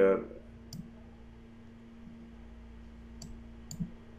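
Computer mouse clicking three times, once about a second in and twice close together near the end, over a faint steady hum.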